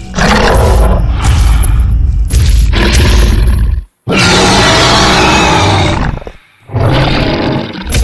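Tyrannosaurus rex roar sound effects: three long, loud roars, deep and rough. The first cuts off sharply to a moment of silence about four seconds in.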